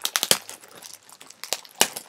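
Packaging bag being handled and torn open: a quick run of crinkling crackles in the first half second, then two sharp crinkles near the end.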